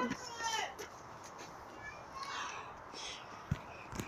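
Faint voices in a quiet lull, with a single soft knock about three and a half seconds in.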